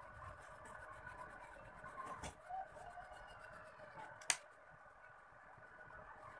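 Quiet pencil handling on a drawing desk, with one sharp click a little past four seconds in as a pencil is set down against the desk.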